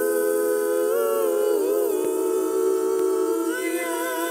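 A man and a woman singing a cappella in harmony, holding the long sustained notes of the song's final chord, with a brief waver in pitch about halfway through.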